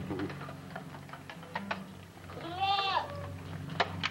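A goat bleats once, a single call of about half a second that rises and falls in pitch, about two and a half seconds in. A sharp click comes near the end.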